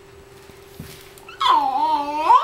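A baby's loud, drawn-out vocal call that wavers in pitch, starting about one and a half seconds in, over a faint steady hum.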